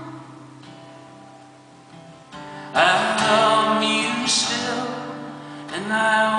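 Acoustic guitar played solo in an instrumental passage: chords ringing and fading, a strong strummed chord about three seconds in that rings out, and another just before the end.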